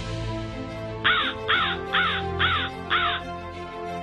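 A crow cawing five times in quick succession, about two calls a second, over background music.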